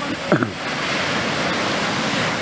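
Small waves breaking and washing up a sandy beach, a steady hiss of surf that swells a little just after half a second in. About a third of a second in, a brief, loud sound slides quickly down in pitch.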